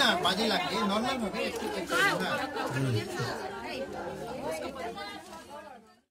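Chatter: several people talking over one another close by. It grows quieter over the last couple of seconds and cuts off just before the end.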